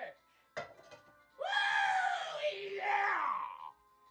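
A man screaming: one long, rough yell of about two seconds, starting about a second and a half in and falling in pitch at its end. A single sharp knock comes about half a second in.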